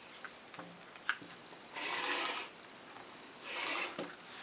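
A 45 mm rotary cutter and acrylic ruler working quilting fabric on a cutting mat. A few light clicks come in the first second, then two scraping rasps, one in the middle and a shorter one near the end.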